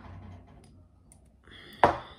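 Faint handling of a small essential oil bottle as its cap is worked open, then a short rasp and one sharp click near the end.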